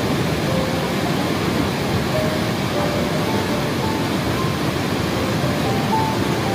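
Steady rushing of a waterfall, an even noise spread from low to very high pitches, with faint background music beneath it.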